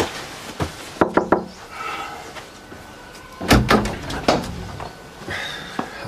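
Knocking on a door: a few raps about a second in, then a second round of knocks about three and a half seconds in.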